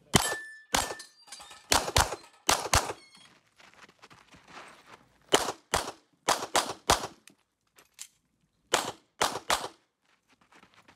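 Sig Sauer P320 X-Five pistol firing rapidly, about fourteen shots, mostly as pairs a quarter second apart, in three strings separated by pauses of about two seconds.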